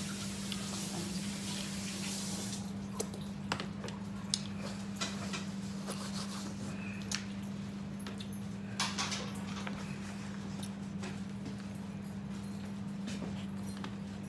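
A steady low hum with scattered light taps and clicks; a hiss at the start cuts off about three seconds in.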